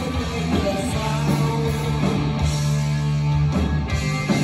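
Live punk rock band playing an instrumental stretch with no vocals: electric guitars, electric bass and drums. Notes are held steady from about a second in until near the end.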